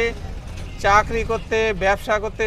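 A person's voice, breaking off at the start and resuming just under a second in, over a steady low rumble.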